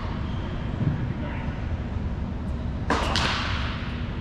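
Two sharp tennis ball impacts a fraction of a second apart, about three seconds in, echoing in a large indoor hall, over a steady low hum.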